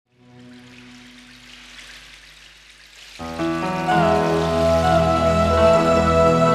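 Instrumental intro of a slow love song: a faint, airy opening, then about three seconds in fuller music with sustained chords comes in and swells to full level.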